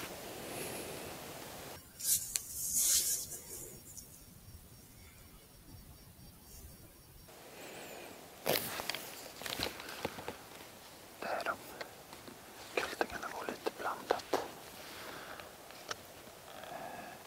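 Faint whispering in short bursts, with a few soft clicks and rustles.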